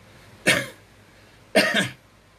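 A man coughing twice: a short cough about half a second in and a longer one near the end.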